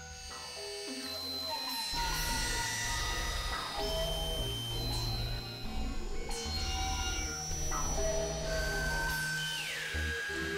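Novation Supernova II synthesizer played live: layered, held electronic tones over deep bass notes that shift every second or two, with a falling pitch glide near the end.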